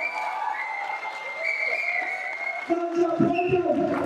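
A man's voice speaking into a microphone over a public-address system in a large, echoing hall, with crowd noise underneath in the first part.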